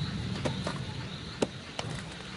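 Sound-effect ambience of a railway platform with a troop train standing in: a low rumble fading away, with a few sharp clicks, the loudest about one and a half seconds in.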